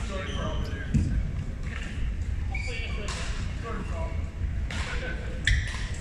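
Large sports hall ambience between badminton rallies: a steady low hum with distant voices, two sharp thuds, one about a second in and one near the end, and a brief high squeak.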